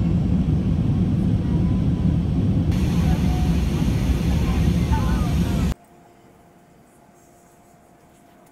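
Jet airliner cabin noise in flight: a loud, steady, deep rumble of engines and rushing air heard from a window seat, turning brighter about three seconds in. Near the end it cuts off suddenly to a much quieter, low cabin hum.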